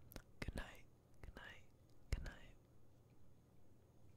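Faint whispered speech in a few short phrases, with several sharp clicks between them, the loudest just after two seconds in.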